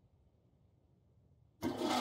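Near silence, then about a second and a half in a shower's running water cuts in suddenly as a loud, steady hiss.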